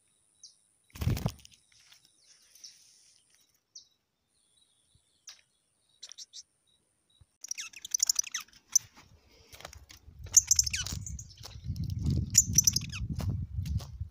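Small songbirds chirping with short, high calls, sparse at first and coming thick and fast in the second half. A single loud thump about a second in, and low rustling and footstep noise in the last few seconds.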